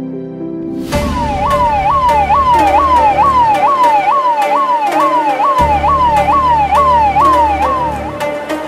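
A police-style siren sweeping rapidly up and down, about two and a half sweeps a second, over electronic dance music with a regular beat and heavy bass. It comes in suddenly about a second in, and the bass drops out for a moment midway.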